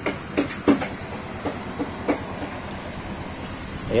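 Steady low background hum with a few faint, scattered clicks and knocks.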